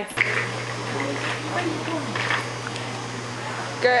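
A steady low hum, with faint, scattered voices murmuring in the background during the first half.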